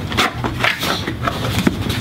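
Cardboard box being opened by hand, its flaps pulled open with quick, irregular scraping, rustling and clicking of the cardboard.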